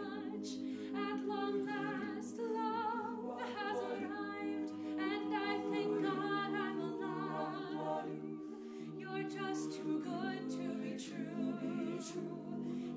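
Mixed a cappella choir singing sustained chords in close harmony, with the upper voices wavering in vibrato over a held bass line. The bass note steps up about halfway through.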